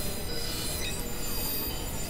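Experimental electronic noise music: a dense wash of many high steady tones and a few slow pitch glides over thick low noise, with no beat or break.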